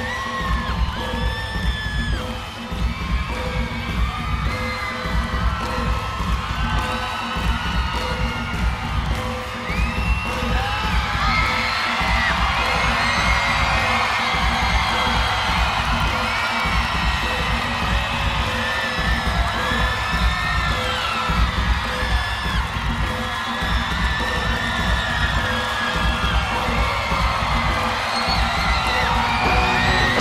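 Crowd screaming and whooping over a throbbing low drum-and-bass pulse: the live intro of a rock song before the vocals come in. The music grows fuller about ten seconds in.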